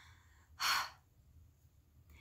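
A woman's single audible breath, lasting about half a second, a little over half a second in. Otherwise there is only faint room tone with a low hum.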